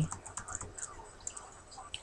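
Quiet room tone with a low hum and a few faint, scattered clicks.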